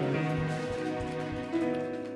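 Live band ringing out a held chord that slowly fades, with a few low drum thumps under it, as at the close of a song.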